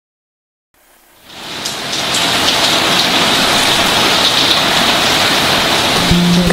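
Steady rain, with a few faint drop ticks. It fades in from silence over about a second.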